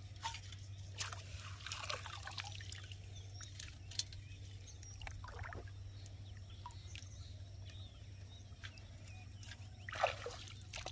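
Shallow water trickling, dripping and lightly splashing around hands, a mesh basket and an aluminium pot, with scattered small knocks, the sharpest about four seconds in.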